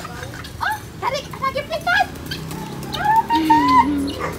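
A mixed flock of backyard fowl (guinea fowl, turkeys and pigeons) calling as they crowd in to be fed: a busy jumble of short rising-and-falling calls, with one longer held call near the end.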